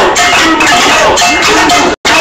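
Protest street parade: loud clanking, rattling hand percussion over the mingled voices of a crowd. The audio drops out for an instant at the very end.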